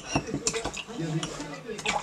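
A metal muddler pounding watermelon cubes and basil leaves in a glass, knocking and clinking against the glass, with a few sharp clinks, one near the end.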